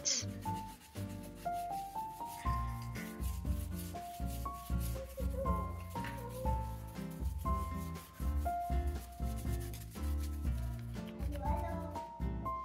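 A toothbrush scrubbing a cleaning paste into the edge of a ceramic floor tile in quick back-and-forth strokes, over background music with a melody of stepping notes and a steady bass.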